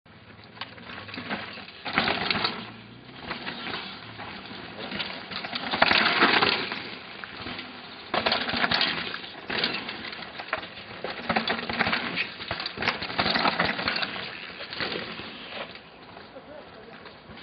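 Downhill mountain bike tyres crunching and skidding over a loose dirt and gravel track, in several loud crackling bursts as riders pass.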